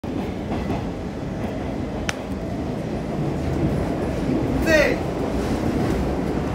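C14 metro car running underway, heard from inside the car as a steady low rumble. A sharp click comes about two seconds in, and a brief raised voice is heard about five seconds in.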